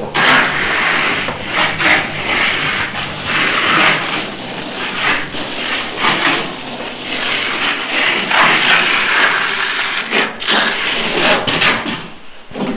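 Steel plastering trowel scraping across fresh lime plaster (shikkui) on a wall in long, repeated strokes, with brief breaks between strokes, as the finish coat is pressed flat.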